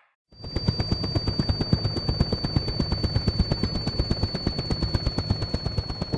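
Rapid, even chopping pulses, about ten a second, with a steady high whine held over them, in the manner of a rotor or drone flight sound effect; it starts a moment in and carries on into the music that follows.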